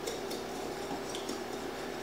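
A wire whisk stirring dry bread flour, yeast and salt together in a large mixing bowl, a steady scratchy swishing.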